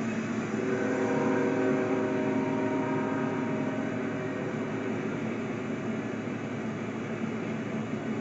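A Union Pacific locomotive's five-chime Nathan K5HL air horn sounds one held chord for about three seconds, starting about a second in and then fading. Under it runs the steady rumble of the coal train crossing the overpass.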